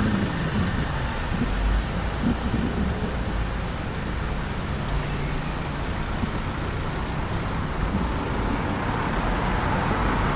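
Road traffic: a line of cars moving slowly past close by, their engines giving a steady low hum under the tyre noise.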